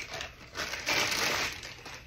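Clear plastic packing bag crinkling and rustling as a telescope focuser is pulled out of it, one stretch of rustling starting about half a second in and lasting about a second.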